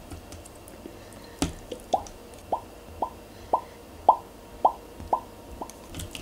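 Soft white slime squeezed and pressed by fingers, making a regular series of about nine short plops that rise in pitch, about two a second, starting about a second and a half in.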